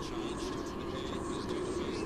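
Steady hum of distant traffic, with faint short high chirps now and then.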